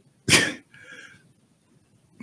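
A man's single sudden, explosive burst of breath close to the microphone, a sneeze or cough, about a quarter of a second in, followed by a faint breathy sound.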